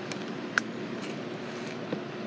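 A single short metallic clink about half a second in, from metal tooling being handled on a tubing notcher, over a steady shop hum.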